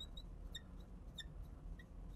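Faint, short squeaks from a marker on a glass lightboard as a word is written, several small chirps spread unevenly through the moment.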